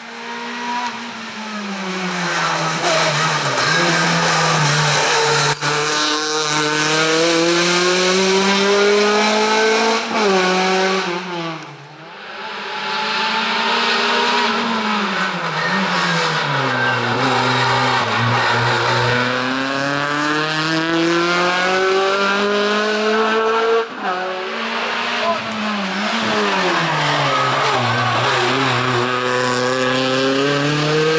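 Race-prepared hatchback's engine driven hard through a slalom, revs climbing under full throttle and dropping several times as it brakes, shifts and accelerates again. The deepest drops come about twelve seconds in and again near twenty-four seconds.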